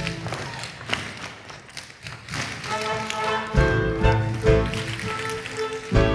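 Tap shoes clicking on a wooden stage floor as a chorus line tap-dances to the show's band. The accompaniment thins out soon after the start, leaving mostly scattered taps, then comes back in full about two and a half seconds in.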